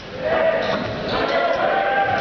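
Volleyball rally in a gym: players and spectators shouting over the sound of the ball being hit, echoing in the large hall.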